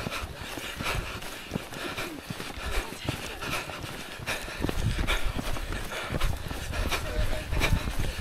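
Footsteps of a group of walkers on a stony dirt path, many uneven steps, with a low rumble on the microphone that grows stronger about halfway through and voices in the background.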